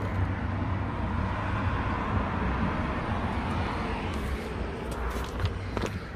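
Road traffic noise: a steady rush and low rumble of vehicles on the road, easing slightly towards the end, with a few short clicks in the second half.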